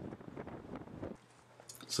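Faint crackling outdoor background noise on the camera microphone, cut off abruptly about a second in, leaving near silence with a faint low hum before a man's voice starts at the very end.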